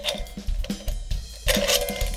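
Light metallic clicks and knocks as a hi-hat top piece is fitted onto the rod above a closed hi-hat pair. About one and a half seconds in, the cymbals ring briefly.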